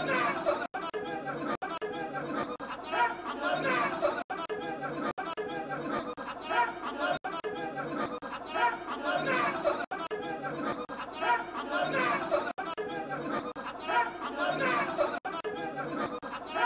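A crowd of men talking and shouting over one another at once, an agitated hubbub from a scuffle breaking out among supporters.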